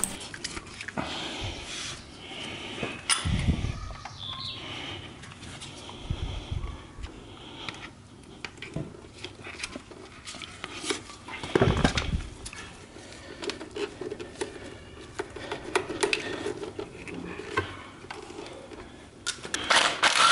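Light metallic clinks, taps and knocks of gloved hands and a tool working on a motorcycle engine's water pump housing and a small coolant hose. Two duller thumps stand out, one a few seconds in and one a little past the middle.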